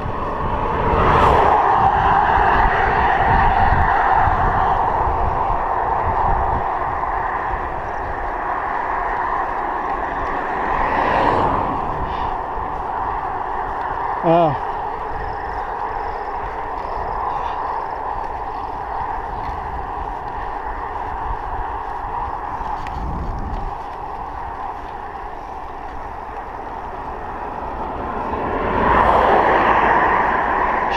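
Wind rushing over a chest-mounted action camera's microphone and tyre noise from a bicycle riding along a paved road, a steady noise that swells and fades. A short gliding squeak sounds about halfway through. Near the end the noise grows as an oncoming car comes close.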